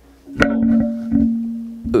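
A low synthesizer note with a sharp attack about half a second in, held and slowly fading for about a second and a half, struck again a little past one second.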